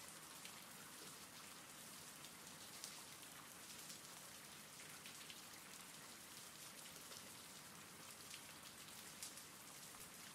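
Faint, steady recorded rain: a soft even hiss with scattered small drop ticks.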